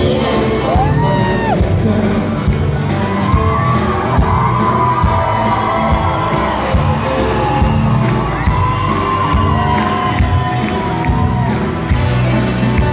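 Live pop band music with a steady beat, heard from within an arena audience, with the crowd cheering and whooping over it.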